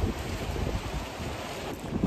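Storm wind gusting across the microphone: an uneven rush of noise with low rumbling buffets, the storm's wind arriving.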